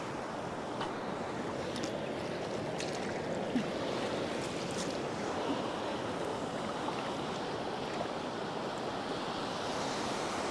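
Shallow beach surf washing in and out over sand around the legs, a steady wash of water with a few faint clicks in the first half.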